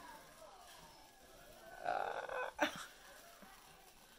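A woman's strained, wheezy breath as she winces, pulling a peel-off face mask off her skin, with a short sharp sound a little past halfway.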